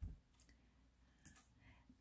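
Near silence: room tone with a couple of faint clicks.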